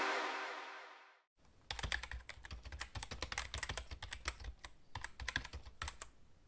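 Intro music fading out, then after a brief gap, rapid irregular clicking of typing on a computer keyboard.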